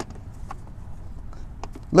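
A few faint, sparse clicks and taps as a trimmed rubber-plastic floor liner is pressed and seated into a vehicle footwell by hand, over a low steady background.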